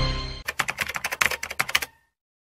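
Intro music fading out, then a quick run of keyboard-typing clicks, about ten a second for over a second, used as a typing sound effect for on-screen text.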